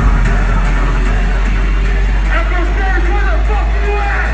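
Electronic dance music played loud over a club sound system: a deep, sustained sub-bass note hits abruptly and holds, with voices shouting over it.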